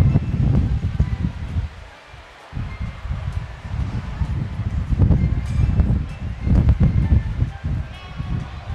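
Wind buffeting the microphone in uneven gusts, easing off briefly about two seconds in, with faint voices in the background.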